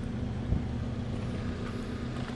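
Steady low machine hum with a few even tones, and a single short knock about half a second in.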